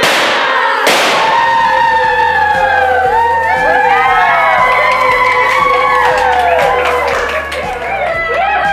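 Excited squeals and cheering from a small group of women over background music, with a sharp bang at the start and another about a second in.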